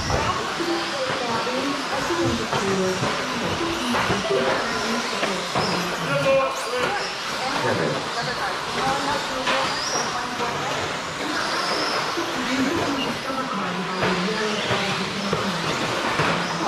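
Several electric 1/10-scale RC stadium trucks racing on a track: a steady mix of motor whine and tyre noise, with people's voices talking over it.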